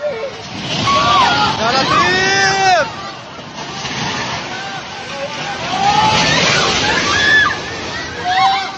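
People shouting and crying out in alarm over a loud, continuous rushing noise as a building collapses in a cloud of dust. A long high yell rises and falls about two seconds in, and more shouts come near the end.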